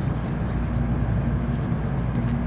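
Steady low rumble and hum of a JR Central N700A Series Shinkansen running, heard inside a passenger car, with a few steady low tones held over the rumble.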